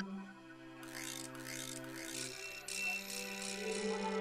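Background film-score music of sustained held notes. A shimmering high layer comes in about a second in, and the chord shifts a little past halfway.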